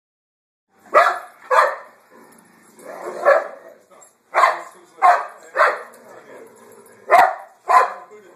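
Dogs barking: about eight short, sharp barks at uneven intervals, starting about a second in.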